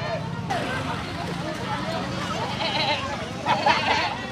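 A crowd of children shouting and chattering in excited, high-pitched voices, with a louder burst of shouting near the end.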